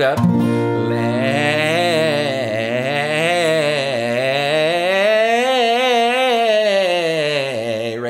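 A man sings a scale on an A over an acoustic guitar chord, strummed once near the start and left ringing, his voice rising and falling in several arcs with a wavering pitch. It is a light pop-style delivery, a little throaty and on the weak side, not using a lot of strength in the sound.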